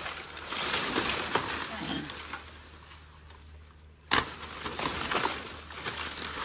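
Rustling and crackling of a felled banana plant's large leaves and stalk as they are pulled and handled, with one sharp knock about four seconds in.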